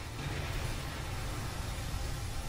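Steady rushing noise of a storm at sea, wind and heavy waves, from the anime's soundtrack, deep and full.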